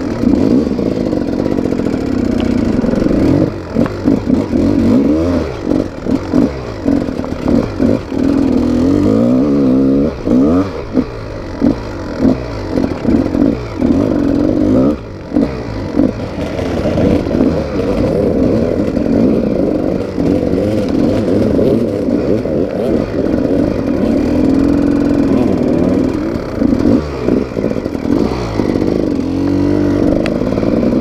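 GasGas enduro dirt bike engine ridden off-road, its pitch rising and falling over and over as the throttle is worked, with brief drops every few seconds where the throttle is shut.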